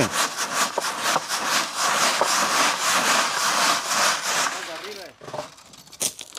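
Sand being sifted by shaking a wooden-framed wire-mesh screen back and forth over a steel wheelbarrow: a rhythmic rasping hiss of sand scraping across the mesh and pouring through. It fades out about four and a half seconds in.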